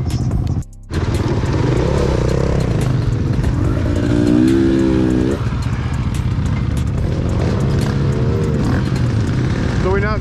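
Dirt-bike engines running, the nearest the camera rider's own KTM 300 two-stroke, with a steady low rumble throughout. The sound cuts out briefly just under a second in, and riders' voices sound over the engines later on.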